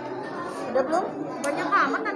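Several voices chattering over one another in a busy room, with one brief click about one and a half seconds in.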